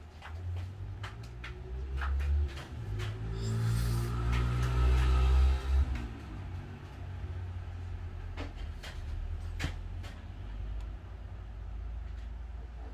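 Light clicks and taps of hands handling small biscuit (cold porcelain) clay pieces on a table, over a steady low rumble. A louder rushing swell rises and fades in the middle, lasting about two seconds.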